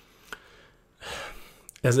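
A man's audible in-breath through the mouth, about a second in and lasting under a second, after a faint mouth click.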